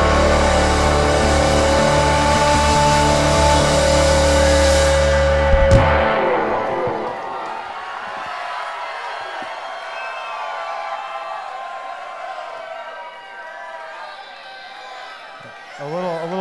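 A live rock band with guitars, bass, keyboards and drums holding a loud closing chord with heavy bass, cut off by a final hit about six seconds in. The audience then cheers and whoops.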